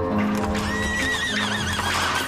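A horse whinnying: one long, wavering neigh that starts just under a second in, over background music.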